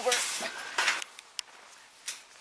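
Work boots scuffing and crunching on dry, gravelly dirt for about a second, with a sharp click about a second and a half in.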